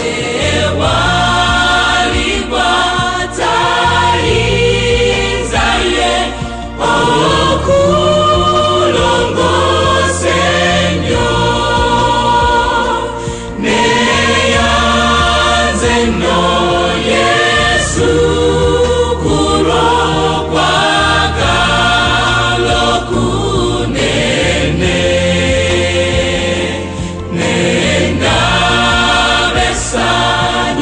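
A mixed school choir singing a gospel song in full harmony over a steady low bass line, in phrases with brief breaths between them.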